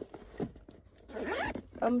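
A short rasping zip sound about a second in, after a light click at the start.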